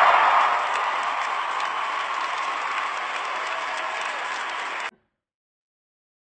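Audience applauding at the end of a speech, loudest at the start and slowly fading, then cut off abruptly about five seconds in.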